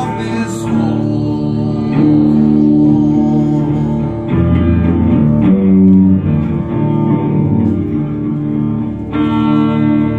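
Amplified electric guitar playing an instrumental passage of sustained chords, changing every second or two.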